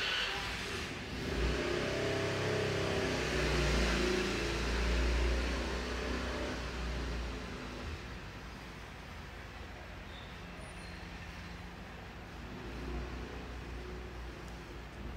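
A motor vehicle engine rumbling as it passes, swelling about two seconds in and fading away by about eight seconds.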